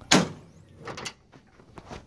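Lid of a diamond-plate metal truck-bed toolbox being unlatched and swung open: a sharp metallic clack just after the start, then a fainter knock about a second in.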